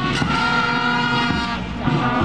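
School marching brass band playing: brass instruments holding sustained chords over bass and snare drums, with cymbal crashes near the start.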